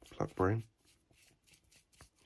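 A brief bit of voice right at the start, then faint, rapid scratching and ticking of a paintbrush stippling thinned paint into the rough surface of a 3D-printed model base.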